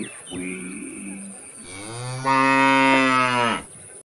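A cow mooing: a soft low call, then one long loud moo that swells about a second and a half in and stops shortly before the end.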